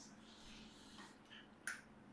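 Near silence: room tone, with one short, sharp click near the end.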